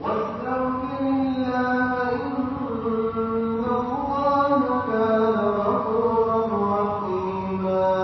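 Quranic verses of Surat an-Nisa recited in a melodic chanted style by one voice, holding long notes that glide slowly in pitch.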